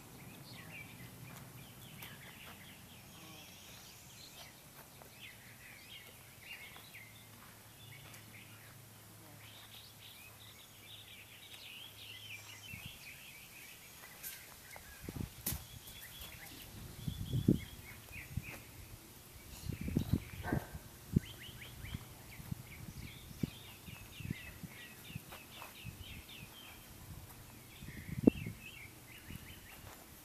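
Wild birds chirping and singing in the background throughout, with a few low thumps about halfway through and one near the end.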